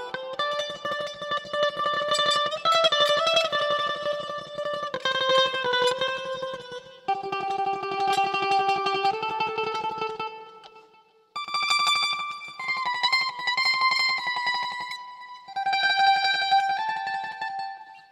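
Mandolin played through delay, tremolo-picking a melody of long held notes. The playing breaks off briefly about ten seconds in, then picks up again in a higher register.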